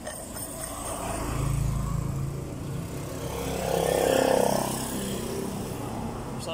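A motor vehicle passing by on the street, its engine sound swelling and fading, loudest about four seconds in.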